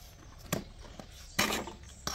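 A metal screed rule being set against a brick wall: a sharp knock about half a second in, then a short scrape against the mortar and brick near the end.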